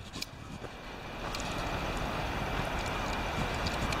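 Road traffic passing close by on a wet, snowy road: a steady hiss of tyres that swells about a second in, over a low rumble of wind on the microphone.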